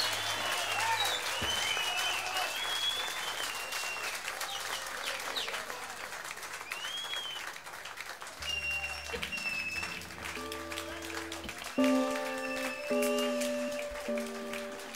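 Audience applauding at the end of a live blues number. About eight seconds in, bass and guitar notes come in, and near the end the band kicks off the next tune with a louder guitar-led entry.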